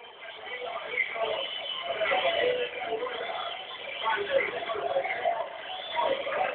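Football stadium crowd chanting and singing, many voices together, swelling over the first second and then staying loud.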